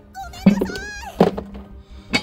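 An edited-in comic sound effect over background music: two heavy thuds about three quarters of a second apart, each trailing a low hum, with a wobbling, sliding whistle-like tone over the first second.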